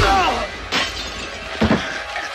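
Movie fight sound effects of a baseball bat attack: a loud crash with glass shattering at the start, then more blows about halfway through and near the end, with a man crying out.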